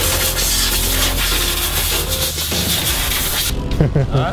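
A steady harsh rasping noise of a tool working on a part, over background music; the rasp cuts off sharply about three and a half seconds in.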